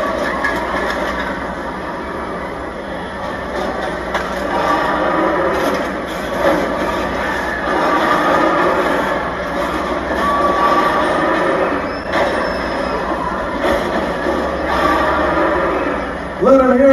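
Car-crushing robot dinosaur Megasaurus tearing and crushing a car in its jaws: a continuous din of grinding, creaking metal and machinery, with scattered clanks and a few brief high squeals.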